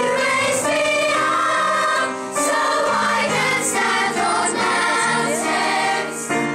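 Children's choir singing in unison, sustained sung phrases with a brief break about two seconds in.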